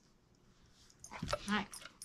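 Doberman giving a brief high-pitched whine about a second in.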